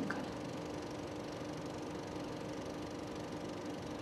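Steady background hum with a constant low tone and no other events.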